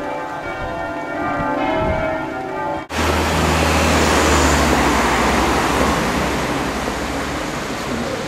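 Church bells ringing, several notes held and changing, for about three seconds. They are cut off abruptly by a steady, louder roar of street noise with a low rumble.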